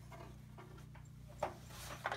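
Faint rubbing and handling sounds as a raw calzone is slid and lifted from a wooden board onto a baking pan, over a steady low hum.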